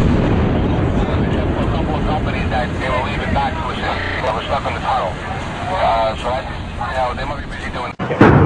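A deep rumble that comes in suddenly and carries on as a continuous low roar, with people's voices over it.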